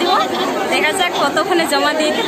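A woman speaking Bengali over the chatter of a crowd.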